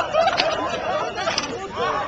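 Many people's voices overlapping in a jumble of shouts, whoops and chatter, with a couple of sharp clicks about half a second and a second and a half in.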